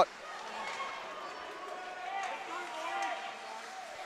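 Ice hockey rink sound during play: distant voices calling out across the rink, with a few faint clacks of stick and puck.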